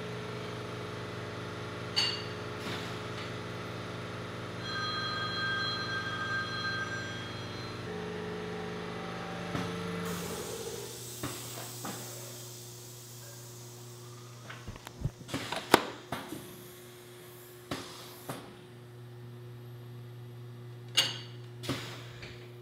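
Automatic screen printing press running with a steady hum, a burst of hiss about halfway through and then a run of sharp knocks and clicks. Among them is a little sticking noise: the black screen tacks to ink that was flashed under the four earlier colors and pulls off the shirt.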